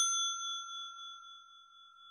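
A bright notification-bell 'ding' sound effect, struck just before and ringing on as a clear high tone with several overtones, slowly fading away.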